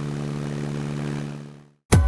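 Stinson 108 light airplane's piston engine and propeller running at low, steady power while taxiing, a steady low hum that fades out about a second and a half in.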